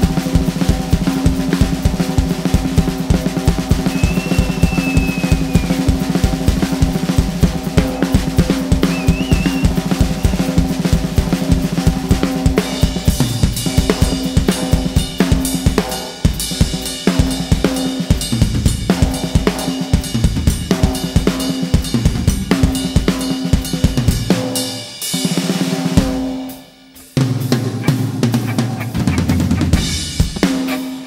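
Live rock band jam led by a drum kit played hard: steady bass drum, snare and cymbal strokes over a held low note. The music drops away almost to nothing about 27 seconds in, then comes straight back.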